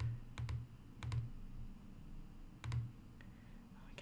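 Computer mouse clicking: several separate, sharp clicks at irregular spacing, some with a dull low knock, as blocks are placed one by one.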